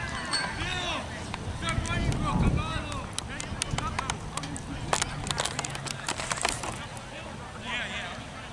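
Distant shouting voices from players and sideline spectators on an outdoor soccer field, with a burst of scattered sharp clicks midway through.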